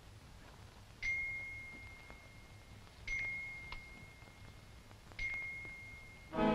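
A bell or chime struck three times on the same high note, about two seconds apart, each note ringing on and fading slowly.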